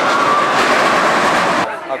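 Steel looping roller coaster train running through its loop: a loud, steady rushing noise of the cars on the track, which stops abruptly near the end.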